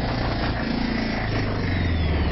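Electronic music: a low, throbbing synthesizer drone with a rapid pulse running through it.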